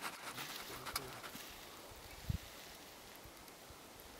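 Quiet outdoor background. A faint, low murmuring voice is heard in the first second, and a single dull low thump comes a little past halfway.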